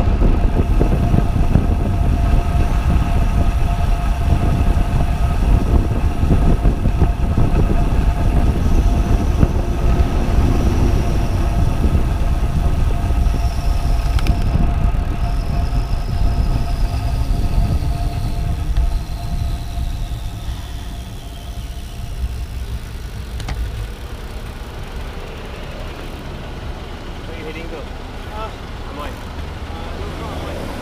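Wind buffeting and road rumble on a bicycle-mounted action camera while a road bike rides at speed; the rumble fades as the bike slows to a stop about two-thirds of the way in.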